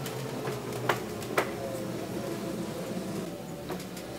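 Steady low hum of a large store interior, with a few short sharp clicks or taps, two of them close together about a second in.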